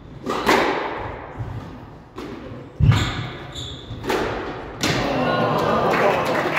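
Squash rally: the ball cracking off rackets and the court walls, with one heavy thud about halfway through and short squeaks of court shoes on the hardwood floor. From near the end the room fills with steady crowd noise and voices as the rally ends.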